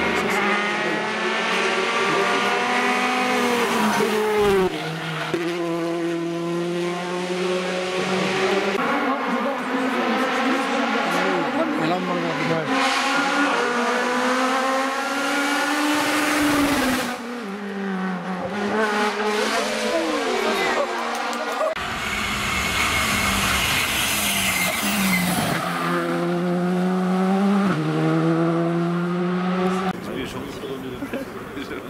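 Rally cars driven flat out on a tarmac stage. The engine note climbs hard and drops back at each gear change, over and over, and the sound jumps a few times as one pass gives way to another.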